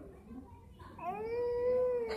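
A young child's long, drawn-out vocal "aaah" starting about halfway through, rising in pitch at first and then held steady on one high note.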